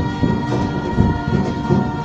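A group of girls singing together in unison and harmony, holding long notes over a strummed acoustic guitar.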